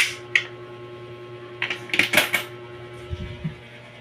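A new one-peso coin going into an Allan universal anti-hook coin slot: a click as it is inserted, then a cluster of clicks and a metallic rattle about two seconds in as it runs through the acceptor and is taken. This plays over a steady low electrical hum.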